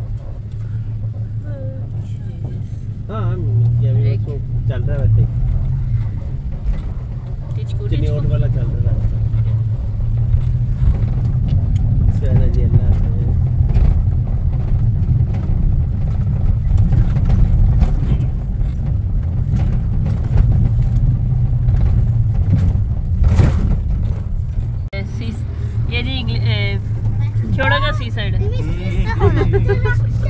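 Steady low rumble of a car driving on an unpaved dirt road, engine and tyre noise heard from inside the cabin.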